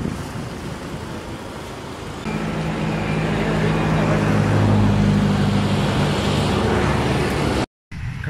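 Road traffic noise, then from about two seconds in a motor vehicle engine running steadily close by with a low, even hum; the sound cuts off suddenly near the end.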